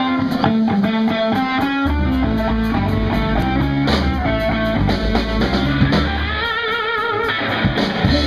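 Blues-rock band playing live: an electric guitar riff opens, and the bass and drum kit come in about two seconds in. A held note wavers with vibrato about six and a half seconds in.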